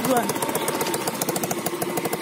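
Small motorcycle engine running at low revs with a rapid, even putter as it labours up a steep, rocky dirt track.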